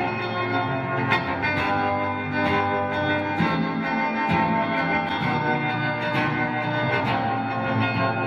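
Acoustic guitar played live, a steady run of picked notes ringing over one another.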